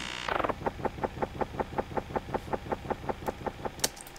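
Analog-synth effect sample playing as a transition: the tail of a falling sweep, then a fast, even pulsing, about eight pulses a second, with a sharp click near the end.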